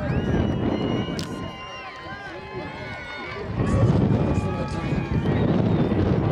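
Overlapping shouting voices of players and spectators on a football field, with one sharp clap about a second in. A louder low noise joins the voices from a little past halfway.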